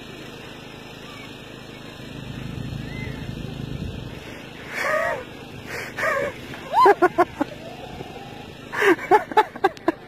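Women laughing: a couple of short vocal sounds, then two bouts of rapid, choppy laughter, the second near the end, over steady outdoor background noise with a low rumble swelling for a couple of seconds early on.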